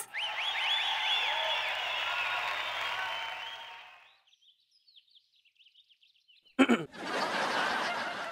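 Sitcom laugh track: a burst of recorded audience laughter for about four seconds, then after a short lull a second burst about six and a half seconds in.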